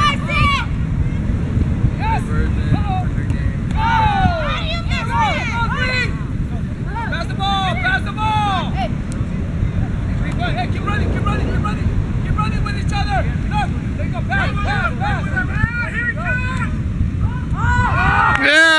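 Children shouting and calling to each other during a beach ball game, many short distant calls scattered throughout, over a steady rumble of wind buffeting the microphone.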